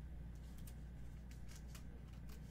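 Trading card slid into a clear plastic card holder: a few faint, short scratchy ticks of card edge on plastic, over a steady low hum.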